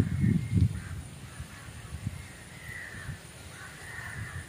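Crows cawing several times, faint, over a quiet waterside background, with a short low rumble of wind or handling noise in the first second.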